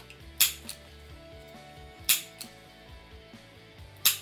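Handheld stapler driving staples through folded paper: two sharp snaps about a second and a half apart, each followed by a lighter click.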